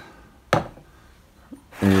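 A single sharp clink about half a second in, from a glazed ceramic jar and its lid being handled, with a faint tick about a second later.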